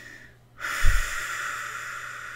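A woman's long, deep breath through the mouth, a sigh, starting suddenly about half a second in and slowly tailing off. It begins with a puff of air on the microphone.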